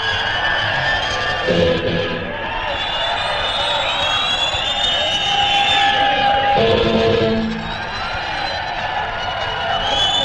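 Live rock concert recording of an instrumental passage: long sustained high notes, some sliding in pitch, over a cheering crowd.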